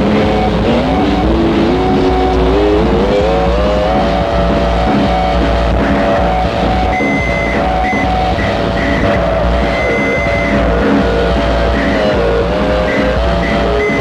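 Harsh noise music: a loud, dense wall of noise over a steady low drone. A pitched tone climbs in steps over the first few seconds and then holds, dipping briefly near the end, while a higher tone stutters on and off from about halfway.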